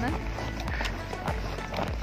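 Footsteps in snow at a walking pace, about two steps a second, over background music.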